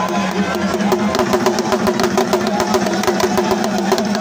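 Fast drumming with many quick, sharp strokes in a steady rhythm, over a continuous low drone.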